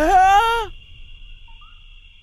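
A short, surprised vocal exclamation from a cartoon character, one drawn-out 'ooh' that rises in pitch and holds for under a second, followed by a faint steady high-pitched tone.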